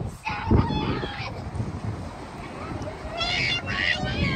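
Steady rumble of a boat's engine and wind on the microphone. Short high calls come over it about a second in and again near the end.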